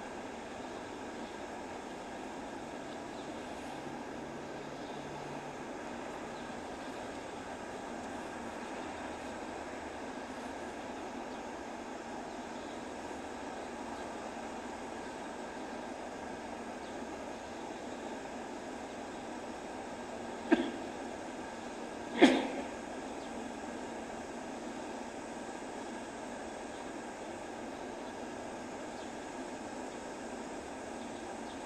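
Steady background noise with no speech, broken by two sharp knocks about a second and a half apart, the second the louder.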